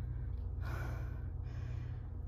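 A woman breathing hard, out of breath from a set of Navy SEAL burpees, with one long heavy breath in the middle, over a steady low hum.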